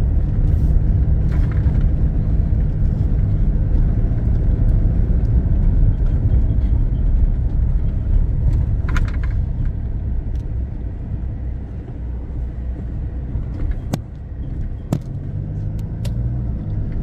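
Car engine and tyre rumble heard from inside the cabin while driving slowly over interlocking concrete paving blocks, a steady low drone that eases off about ten seconds in.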